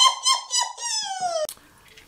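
A high, squeaky sound effect pulsing about four to five times a second, gliding down in pitch and then stopping abruptly.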